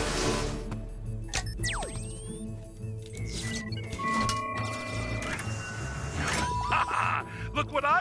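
Animated film soundtrack of sci-fi sound effects: a burst of noise at the start, then electronic beeps and steady tones, a falling whistle-like glide and a short rising one over a low hum, with music underneath.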